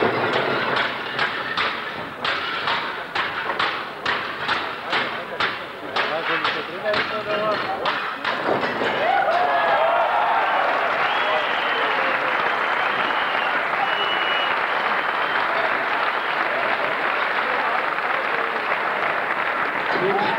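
Stacked clay roof tiles being smashed by hand in quick succession, about three breaking strikes a second for roughly eight seconds. The strikes end and an audience starts cheering and applauding, which runs on steadily.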